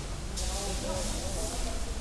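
Faint background voices over steady outdoor ambience: a low rumble with a high hiss.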